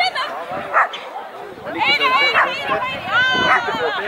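A dog barking and yelping with long, high, drawn-out barks, two of them in the second half.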